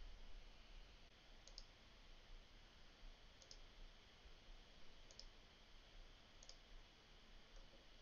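Near silence with four faint computer mouse clicks, spaced about one and a half to two seconds apart.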